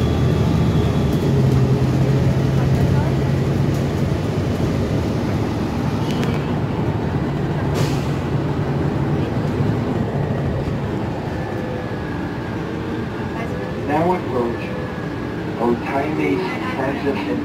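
Interior of a New Flyer XN60 natural-gas articulated bus under way: a steady engine and drivetrain drone with road noise. The low engine tone eases about two-thirds of the way through.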